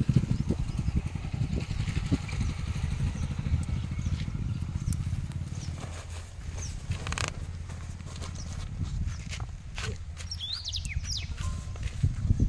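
Outdoor ambience with a steady low rumble of wind on the microphone. Over it come rustling and clicks from a backpack being handled, its straps and buckles worked, and a few short bird chirps, one about halfway and one near the end.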